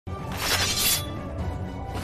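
A sword-strike sound effect: a bright, noisy crash lasting under a second, about a third of a second in, over dramatic background music.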